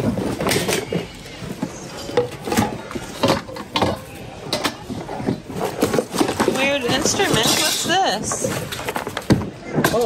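Mixed secondhand items being rummaged through in a plastic bin: repeated knocks and clatters of hard plastic and metal objects, under the chatter of other people's voices.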